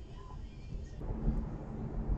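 Low rumble of a moving car heard from inside the cabin through a dash cam's microphone, with faint background music in the first second. About a second in the rumble changes and a steady low hum joins it.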